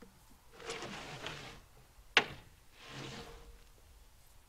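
Short Douglas fir log rounds being dragged and slid across the truck's flatbed, two scraping slides of about a second each, with one sharp knock of wood on the bed between them.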